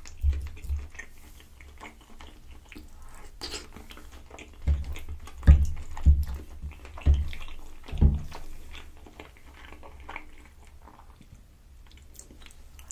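Close-miked chewing of creamy penne pasta: soft, wet mouth sounds, with a run of low, regular chews through the middle.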